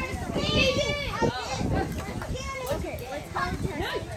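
Several children talking at once: indistinct, overlapping chatter with no clear words.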